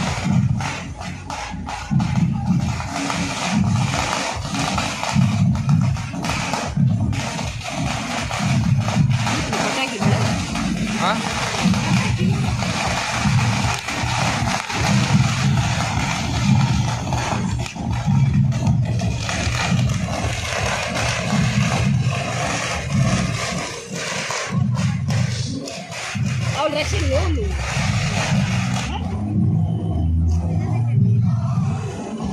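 Loud procession music with a heavy, pulsing beat, mixed with the noise of a large crowd.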